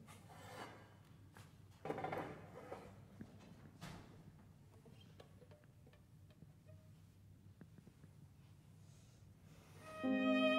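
Near silence in a concert hall: room tone with a few faint rustles and clicks.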